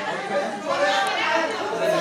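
Only speech: voices talking over one another in a room.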